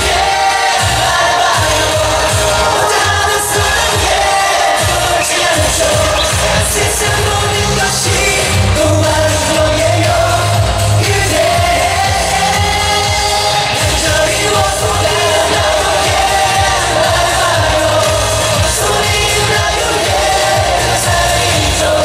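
Live pop song from a concert PA: male group vocals singing over a loud amplified backing track with a steady beat, recorded from among the audience.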